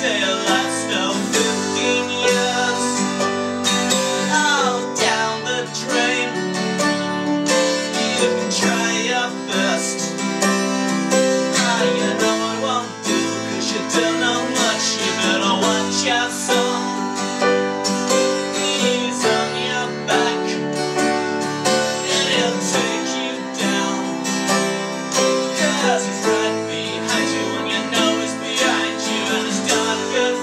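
Live acoustic duo: a Takamine 12-string acoustic guitar strummed alongside a Yamaha grand piano, with a man singing over them in places.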